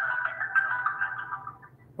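Music played over a telephone call line, thin and tinny, a melody of held notes that stops shortly before the end.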